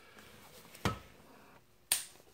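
Two sharp clicks about a second apart as a DeWalt cordless drill is handled.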